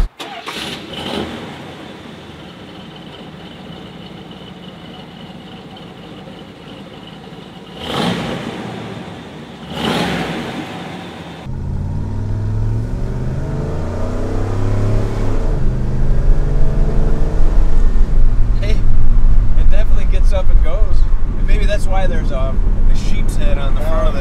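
A quiet stretch with a faint steady tone and two brief swells. Then, about halfway in, the 1979 Dodge Li'l Red Express's 360 V8 with factory exhaust stacks cuts in suddenly, revving up under acceleration and growing louder toward the end.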